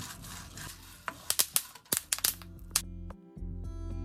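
Flat melon seeds being stirred with a wooden spatula in a dry pan: a rustling scrape, then a quick run of sharp clicks lasting under two seconds. Background music plays throughout.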